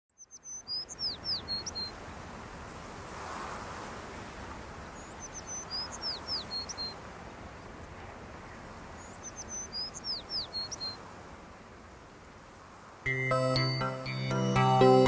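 A songbird singing the same short phrase of high whistles and chirps three times, about four seconds apart, over a steady background hiss. Music with sustained tones starts suddenly about a second before the end.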